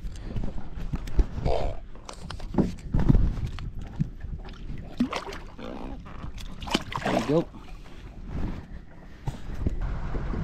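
Water sloshing and splashing as a blue catfish held in a fish lip-gripper is lowered over the boat's side and released, with scattered knocks from handling.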